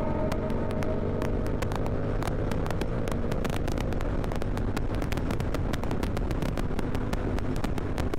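Yamaha Tracer 7's parallel-twin engine running through an aftermarket DSX-10 exhaust, heard from the rider's seat while accelerating to about 140 km/h, mixed with steady wind noise and frequent short clicks on the microphone.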